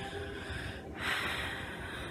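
A person breathing heavily: two long breathy breaths, the second louder, starting about a second in.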